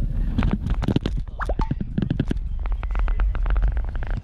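Heavy wind and road rumble on an action camera's microphone as a road bicycle rolls in to a stop. It carries sharp clicks that come in a fast run near the end, and a brief rising squeak about a second and a half in.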